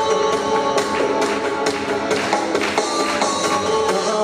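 Instrumental introduction of a Neapolitan pop song, with sustained melody lines over a steady beat of about two beats a second.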